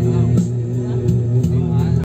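Background music: a melody of long held notes that bend and slide now and then.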